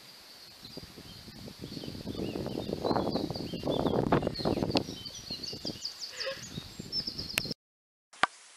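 Wind buffeting the microphone in gusts, loudest through the middle, with birds chirping in short high calls over it. It cuts off suddenly near the end.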